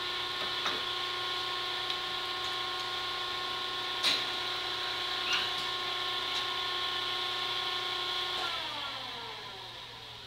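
A machine's electric motor running with a steady whine, with a few light knocks and clicks, the sharpest about four seconds in. About eight and a half seconds in the motor is switched off and winds down, its pitch falling as it slows.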